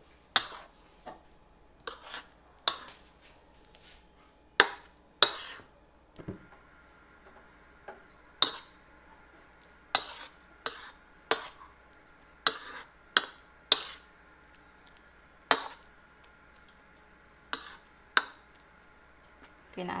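Metal spoon stirring a thick fish-and-egg batter in a plastic bowl, knocking and scraping against the bowl in irregular sharp clicks, roughly one a second.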